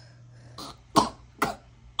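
A woman coughing twice, about half a second apart, two short sharp coughs after a soft breath.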